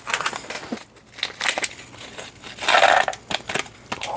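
Crinkling of a small plastic bag of metal nail-art charms being handled and emptied, with scattered light clicks and a louder rustle about three seconds in.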